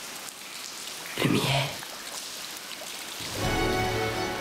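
Water splashing and dripping in shallow water, a steady rain-like hiss, with a short burst of voice about a second in. Baroque ensemble music starts near the end.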